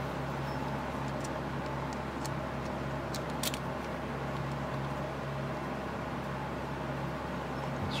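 A steady low hum with a few light clicks scattered through it, the sharpest about three and a half seconds in, as a small steel screw and metal engine parts are handled and fitted by hand.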